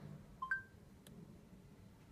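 A short two-note rising electronic beep from the smartphone's voice-recognition app about half a second in, the tone that follows a spoken command, then a faint click.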